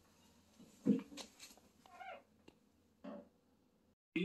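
Faint, short kitten mews, a few brief calls spread across the moment, with a soft bump about a second in.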